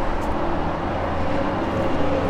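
A steady low motor-vehicle rumble with a faint even hum, unchanging throughout.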